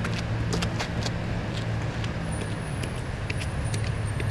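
A motor vehicle's engine running steadily with a low hum, with scattered light clicks over it.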